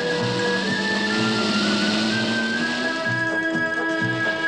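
Film soundtrack music with long held notes at several pitches, changing chords rather than a single engine note.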